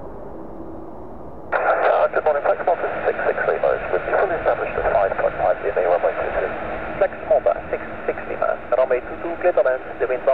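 Air traffic control radio transmission: a voice over a narrow, tinny radio channel that cuts in about a second and a half in and carries on. It follows a steady hum with a faint low tone.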